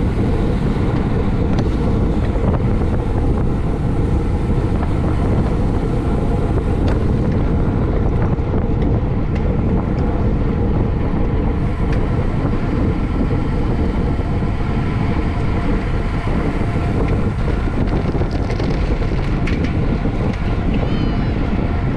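Steady wind rush buffeting a bicycle-mounted camera's microphone as the bike rides at racing speed.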